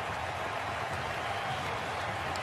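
Steady, even stadium ambience from a football match broadcast: a hiss of distant crowd-like noise with no distinct events.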